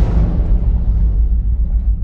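Intro title sound effect: a loud, deep rumble left by a sudden boom, its hiss fading away while the low rumble holds on.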